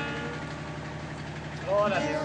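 A strummed guitar chord dying away over a steady low hum, then a short rising voice sound near the end.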